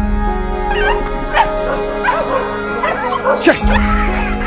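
Caged dogs whimpering and yelping in a string of short cries that slide up and down in pitch, over soft background music.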